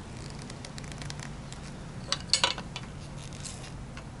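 Flat-blade screwdriver working at the rubber oil-fill plug of a Craftsman 3-ton hydraulic floor jack, pushing it aside to bleed trapped air from the hydraulic system; the tip clicks and scrapes sharply against the jack's metal a few times about two seconds in, over a faint steady low hum.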